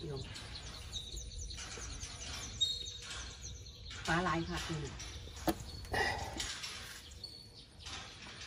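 Faint, quick chirping of small birds in the background, with a few brief words of a man's speech about halfway through and a single sharp click shortly after.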